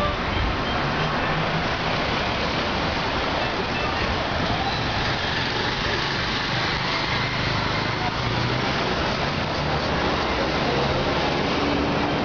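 Steady outdoor street noise: a continuous traffic hum with indistinct voices in the background.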